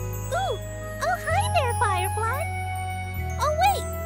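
Soft background score of sustained low chords that change every two seconds or so, with short high ringing tones and bursts of quick rising-and-falling pitched chirps above them, the loudest chirps coming about a second in and near the end.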